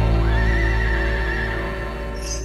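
A horse whinny effect, one long wavering high call that starts a moment in and tails off near the end, over the song's held, slowly fading final chord.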